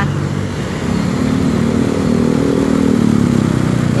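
A motor vehicle's engine in street traffic, its pitch rising as it accelerates and dropping off again about three seconds in.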